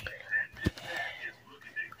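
A person whispering softly, with a single sharp click partway through.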